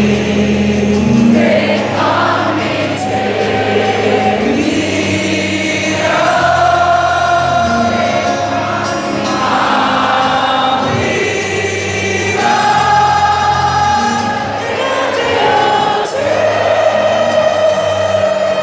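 Live acoustic guitar and singing of a rock-band cover of a pop song, heard from the audience, with many voices singing together in long held notes.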